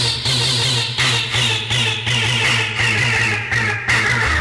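1990s hardcore techno from a DJ mix in a breakdown: the kick drum drops out, leaving a pulsing bass line and a bright synth sweep that slowly falls in pitch.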